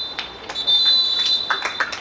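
Referee's pea whistle blowing the final whistle for full time: one blast stops right at the start, then a long steady blast begins about half a second in and runs for over a second. Players' voices join near the end.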